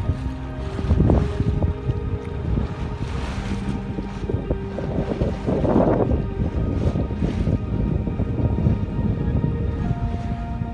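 Wind buffeting the microphone in gusts and water rushing past the hull of a sailboat under way, with soft ambient background music holding steady tones.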